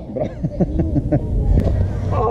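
Short, pitched vocal sounds from a man, with a steady low rumble underneath.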